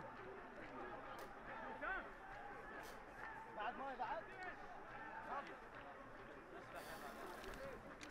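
Faint voices of players and staff talking and calling out on the pitch during a cooling break, over low open-air stadium ambience.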